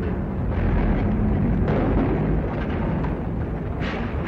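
Loud, continuous rumbling crash of masonry breaking and falling as a building is knocked down by a crane-swung wrecking ball.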